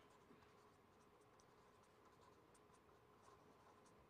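Near silence: the faint, scattered scratching of a pen writing on paper, over a faint steady hum.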